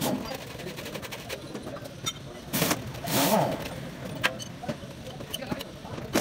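Metal differential parts being hand-washed in a steel basin of oily fluid: liquid sloshing and sharp clinks of metal against metal, with a louder splashy burst about two and a half seconds in.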